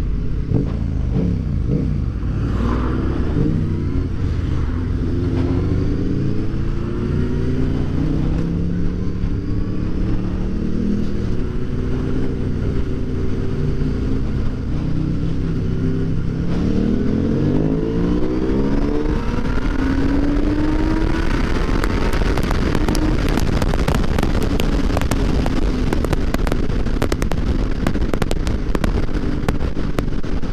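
Motorcycle engine heard from the rider's seat, its pitch repeatedly climbing under acceleration and dropping at gear changes, over steady wind and road noise. Over the second half a rapid crackling is added as speed builds.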